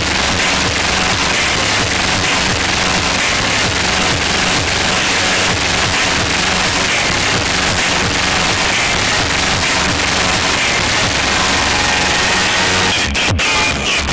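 A van's competition sound system of 20 Stronder 5K2 speakers on Stetsom Force One amplifiers playing music at extreme volume, coming through as a distorted wash of noise over heavy bass, with a brief dropout near the end.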